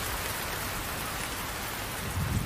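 Steady rain falling, a heavy even hiss of rain on a hard surface in the anime's soundtrack.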